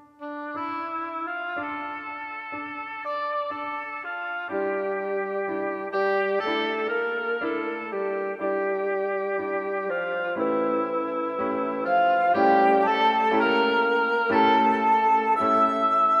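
Yamaha Genos2 arranger keyboard played live over its own MIDI file playback: a slow melody over held chords, with notes changing about once a second. Its panel voices switch automatically as the file's stored voice changes come up, with a saxophone voice among them. The music gets louder about six seconds in and again near twelve seconds.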